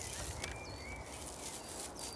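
Outdoor garden background: a few faint bird chirps over a low rumble, with a light crackle of dried nettle stems being handled.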